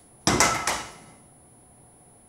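Baseball bat hitting the stage floor: a loud clatter about a quarter second in, a second knock a moment later, dying away within a second.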